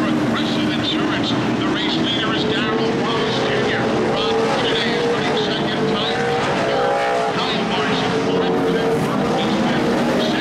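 A field of NASCAR Camping World Truck Series V8 race trucks running at speed, a steady engine drone whose pitch rises and falls as the trucks go by and accelerate through the turns.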